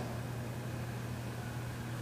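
Steady low hum with a faint even hiss: the room's background noise in a pause in the lecture.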